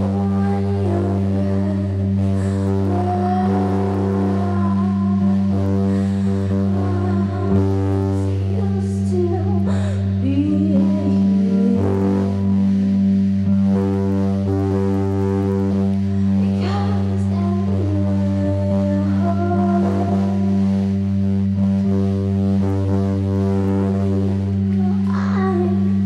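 A live band playing a slow, droning improvised piece: a low tone held at one pitch throughout, with wavering melodic lines over it, some of them sung.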